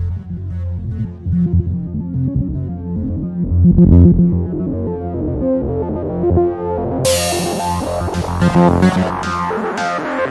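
Dark midtempo electronic music with synthesizer and bass. The top end is muffled at first, then opens up suddenly about seven seconds in, bringing in bright, regular percussion hits.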